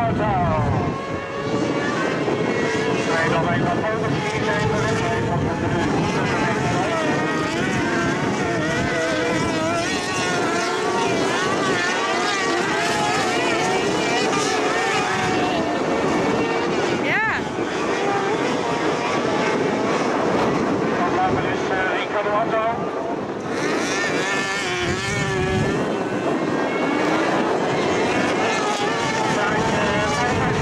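Several junior autocross buggies racing on a dirt track, their engines revving up and down in pitch as they accelerate and back off.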